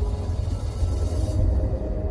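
Cinematic logo-intro sound design: a deep, sustained rumble under a held musical drone, with a brief rising hiss that swells and drops away about a second in.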